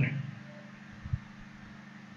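Faint steady low hum of background noise, with one soft low thump about a second in.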